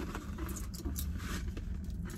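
Fingernails picking and scratching at packing tape on a cardboard bakery box, a scattered series of small scratches and clicks as the tape is worked loose.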